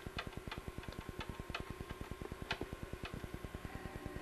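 Faint, fast, even ticking of about a dozen beats a second, with sharper clicks a few times a second, from an analog CRT television as it is stepped down through empty channels on its way to channel 31.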